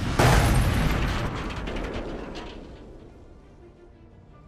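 Sound effect of a small space pod crash-landing: a sudden loud crash about a quarter second in, then crackling that dies away over the next three seconds, with music underneath.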